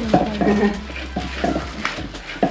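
Spoon and pestle knocking and scraping against the inside of a mortar as a wet pounded noodle salad is stirred and mixed, about eight irregular clacks.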